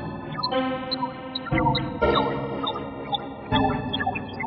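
Electronic music from the Fragment additive (spectral) software synthesizer, played by a Renoise sequence: sustained synth tones with short high notes scattered over them, and a low bass note coming in about every two seconds. Delay and reverb effects are on it.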